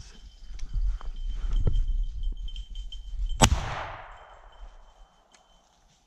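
A single shotgun shot about three and a half seconds in, the loudest sound, with its echo fading over the next second or two. Before it, rough footsteps and brush rustling as the shooter moves through cover.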